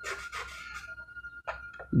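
Chalk scraping faintly on a blackboard as lines are drawn, with a couple of short sharp taps near the end.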